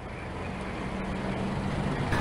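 A motor vehicle's engine running with a steady low hum and some road noise, growing steadily louder.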